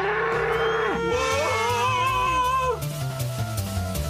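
A cartoon bull bellowing in one long call of nearly three seconds, over background music with a low bass line that carries on alone once the call ends.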